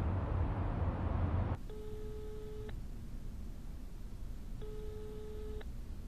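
Telephone ringback tone: two steady one-second beeps about three seconds apart, as a mobile call rings out unanswered. A low rumbling noise fills the first second and a half.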